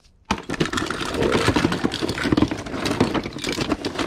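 Many small plastic action figures and toys clattering and rattling against one another as hands rummage through a plastic tote full of them, a busy run of clicks and knocks that starts just after the beginning.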